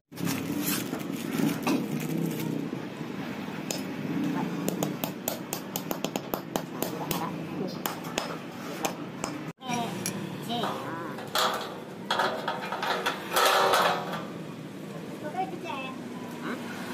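Small metal clinks and knocks of steel roller parts being handled: bearing wheels, washers and a steel shaft for a folding door's track roller being fitted together, in short irregular clicks.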